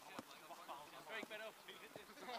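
Faint, indistinct men's voices chatting in the background, with a couple of light ticks, one just after the start and one near the end.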